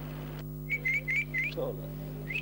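A person whistling to call a dog: four short, quick whistles, each rising at the end, over a steady low hum in the recording.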